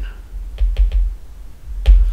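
Stylus tapping and clicking on a tablet screen during handwriting: a series of sharp ticks with dull thumps, the loudest near the end.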